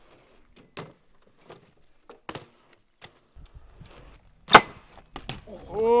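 BMX bike knocking against a wooden grind box: a few light clicks, then one loud, sharp impact about four and a half seconds in, followed by two quicker knocks, on a trick that comes off a bit sketchy.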